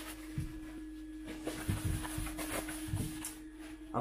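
A steady hum on one pitch, with a few soft low knocks of handling about half a second in and again in the middle and later part.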